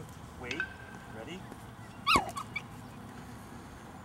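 A Yorkshire terrier giving one sharp, high-pitched yelp about two seconds in, followed by a couple of fainter yips.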